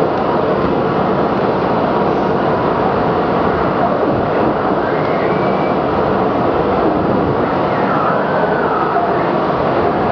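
Dense, steady wall of electronic noise, rumbling low and hissing high, with faint gliding tones rising out of it about halfway through and again near the end.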